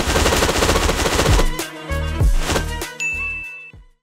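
Channel intro sound effects: a dense, loud burst over deep falling bass sweeps, then a short, clear high ding near the end before it cuts off.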